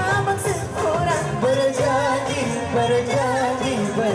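Amplified live singing of a Malay pop song over backing music, with a melodic line that wavers and ornaments its long held notes.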